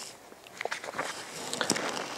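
Scattered light taps and small knocks in a quiet room, about ten of them, irregular and without any steady tone.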